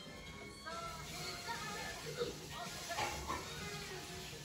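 Animated-film soundtrack heard through a TV speaker: music with short, high character voices rising and falling from about a second in.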